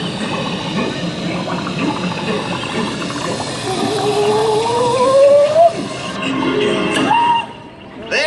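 Music and sound effects from the Muppet Mobile Lab's onboard speakers, with a long rising whistle-like tone in the middle. A sharp pop comes near the end as the confetti cannon fires.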